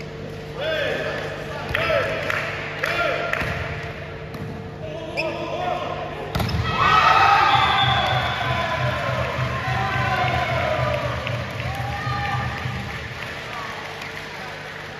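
Volleyball being played in an indoor hall: players' short shouts and calls, a sharp ball strike about six seconds in, then louder, busier shouting as the rally goes on.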